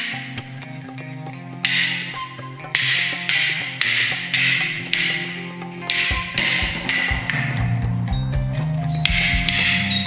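Backing music: sustained low notes with repeated bright crashes, and a heavier low beat coming in about six seconds in.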